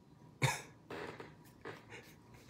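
A man's short, breathy bursts of laughter: a sharp outbreath about half a second in, then a few weaker ones.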